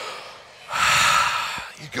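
A man drawing one deep, loud breath in through a close headset microphone, lasting about a second from just under a second in.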